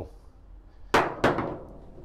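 Two sharp metallic clinks about a third of a second apart, each with a short ring: metal tools or the spindle bolt knocking against metal while the front wheel's spindle bolt is being fitted.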